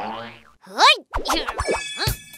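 A cartoon "boing" sound effect: one springy pitch glide that rises and falls about a second in. It is followed by short clicks and plucky notes as background music comes in near the end.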